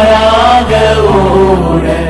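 A voice singing a drawn-out, wavering vowel of a Tamil Christian communion hymn about the blood of Jesus, over a steady low accompaniment whose bass note changes about a second in.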